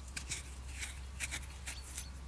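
A few short, faint scratchy rustles of fingers turning over and rubbing a freshly dug coin in the palm, skin and grit scraping on its surface.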